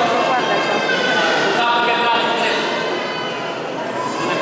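A group of voices chanting a hymn together, with held notes and a repeated refrain: the congregation singing during the baptism rite.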